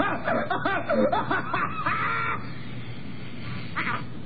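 A man laughing in quick, repeated cackles, about four a second, ending in a held high note about two seconds in. After that it drops to a low background, with one short burst of the laugh near the end.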